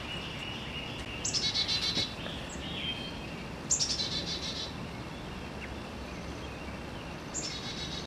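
A small songbird singing three short, high trilled songs, each opening with a quick downward note, a few seconds apart.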